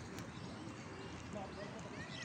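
Outdoor park ambience: faint distant voices and a few short bird chirps over a steady background hiss.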